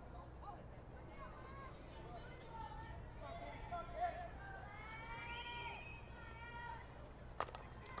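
Faint voices of players and spectators calling out across a softball field, then a single sharp crack of a metal softball bat hitting the pitch near the end, sending a slow ground ball.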